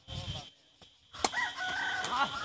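A rooster crowing: one long, high, held call that starts just after a sharp knock a little over a second in. The knock fits a kick of the sepak takraw ball.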